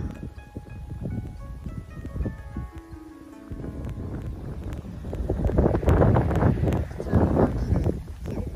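Background music with long held notes, giving way after a few seconds to wind buffeting the microphone, which gusts louder near the end.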